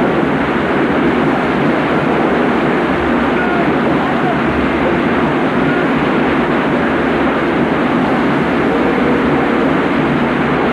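A loud, steady rushing din with a few faint voices in it, running without a break.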